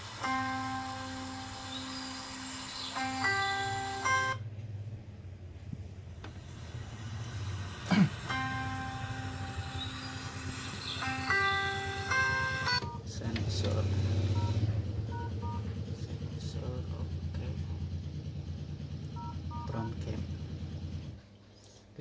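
Samsung Galaxy Note 20 Ultra's loudspeaker playing a short test melody twice, each run about four seconds long, during a speaker test. A low steady hum runs underneath and cuts off suddenly near the end.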